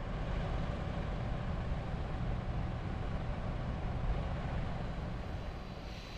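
Steady outdoor rumble with wind buffeting the microphone and a low hum of vehicle engines, easing slightly near the end.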